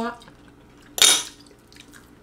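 A fork clattering once against a ceramic plate about a second in, a short sharp scrape that dies away quickly.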